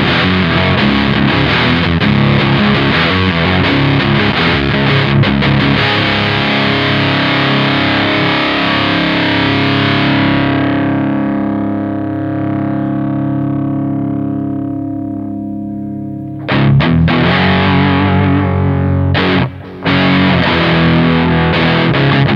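Electric guitar played through the Morley Power Fuzz Wah's fuzz side, with heavily distorted riffing. About halfway through, a held chord loses its treble and fades as the fuzz Intensity knob is turned. Heavy riffing then starts again suddenly, with one short stop.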